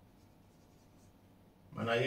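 Faint strokes of a felt-tip marker writing on a whiteboard, with a man's voice starting near the end.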